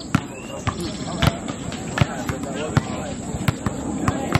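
A basketball bouncing on an outdoor hard court: several sharp, irregular thuds, with players' voices in the background.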